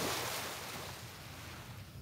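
Small waves breaking and washing up a sandy beach: a swell of surf noise that peaks at the start and fades over about a second and a half, over a low steady rumble.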